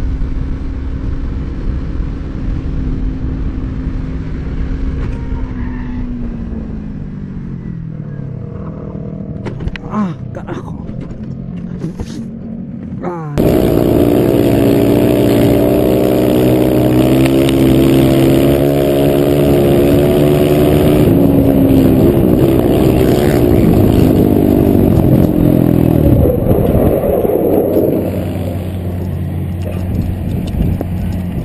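A motorcycle engine runs, its note falling as the bike slows, followed by a few sharp knocks. After a sudden cut, a quad's engine runs loud and hard at high revs, its pitch wavering with the throttle, and drops off near the end.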